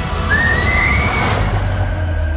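Trailer sound design: a thin high whine slides upward and holds for about a second over a heavy low rumble and a loud noisy wash of score.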